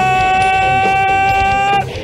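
A ring announcer's long, drawn-out shout: one vowel held at a steady, slightly rising pitch that cuts off near the end, over background music.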